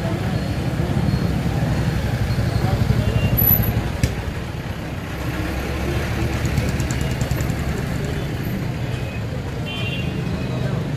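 Street noise of road traffic, vehicles running with a steady low rumble, under indistinct voices. A sharp click about four seconds in, and a short horn toot near the end.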